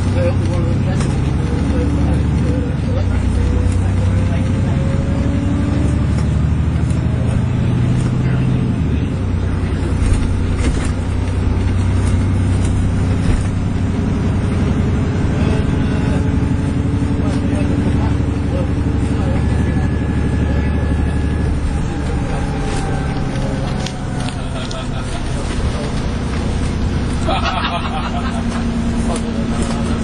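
Alexander Dennis Enviro400 MMC double-decker bus (E40D chassis) running along the road, heard from inside the passenger saloon: a steady low engine and road rumble with tyre noise. Faint whines rise in pitch as the bus picks up speed.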